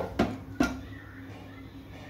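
Hands working flour and oil in a steel mixing bowl, with three sharp knocks against the bowl within the first second, over a faint steady hum.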